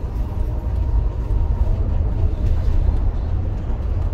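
Volvo B7TL double-decker bus under way, its six-cylinder diesel engine heard from inside the upper deck as a steady low rumble mixed with road noise.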